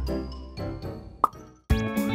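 Light children's background music with a short rising plop sound effect a little past the middle. The music drops out briefly, then a new music cue with rising glides starts near the end.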